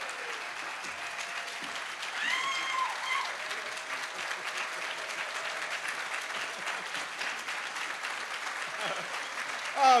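Audience applauding steadily, with a single cheer from the crowd about two seconds in.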